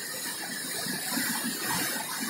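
Steady rushing of a mountain river, an even noise across all pitches with a faint irregular crackle.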